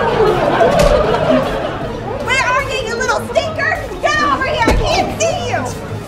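Several voices yelling and shouting over one another in a staged scuffle, with two sharp thumps, about a second in and again near the end.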